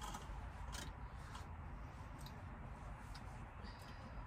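Quiet room tone with a low steady rumble and a few faint, short clicks scattered through it.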